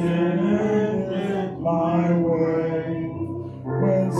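Hymn singing in church: voices holding long, slow notes, with a short break in the line near the end before the next phrase begins.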